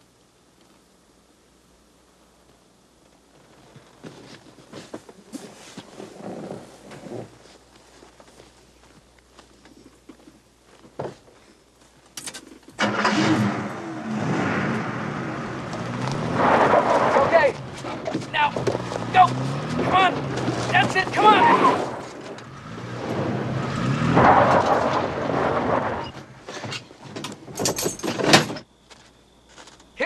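Pickup truck engine revving with its wheels spinning as it is rocked to get free, together with a man's grunts of effort as he pushes. It starts about halfway through, after a quiet stretch with faint knocks.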